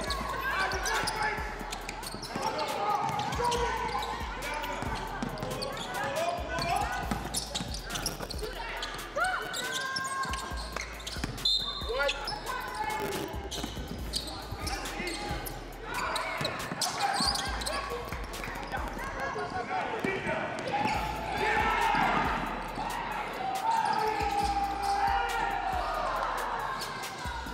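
Basketball game play on a hardwood gym court: the ball bouncing off the floor repeatedly, mixed with the indistinct voices of players and spectators calling out.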